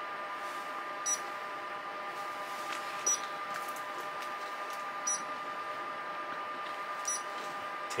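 A steady electrical hum with a short, high electronic beep repeating four times, about two seconds apart.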